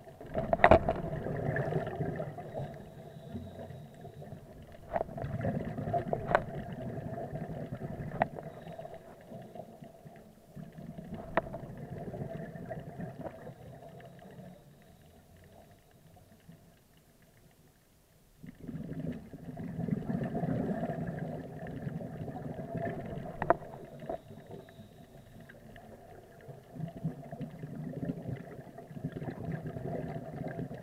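Scuba regulator breathing heard underwater: bursts of exhaled bubbles gurgling for a few seconds at a time, with quieter spells between breaths and a longer lull in the middle, and a few sharp clicks.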